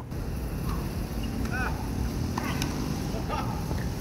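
Steady low wind rumble on the microphone, with a few faint knocks of a tennis ball on racket and court, about two and a half and three and a half seconds in.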